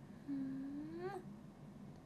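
A young woman's closed-mouth "mm-hmm" of agreement: one held nasal hum that rises slowly in pitch, then lifts quickly upward and stops about a second in.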